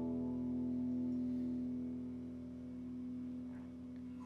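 The final strummed chord of an electric guitar ringing out and slowly dying away, with no new notes played.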